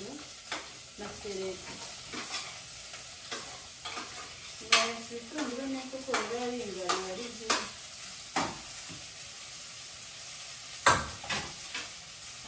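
Food frying in a pot on a gas stove, a steady sizzle, broken by several sharp clicks and knocks of kitchen utensils against the pot and plate, the loudest about five seconds in and again near the end.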